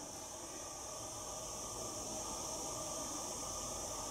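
Steady, even hiss of the recording's background noise, with no distinct sound over it.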